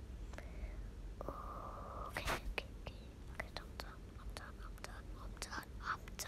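Faint whispered muttering from a person, with several light clicks scattered through, over a low background hum.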